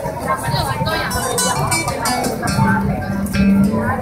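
Guitar music played live amid the chatter of a dense crowd, with a held low note in the second half.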